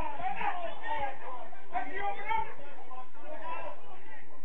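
Indistinct chatter of a few spectators' voices close by, with no clear words.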